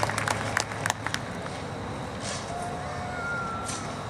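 Audience applause dying away in the first second, leaving the steady murmur of an outdoor crowd. A faint thin tone sounds briefly twice near the middle.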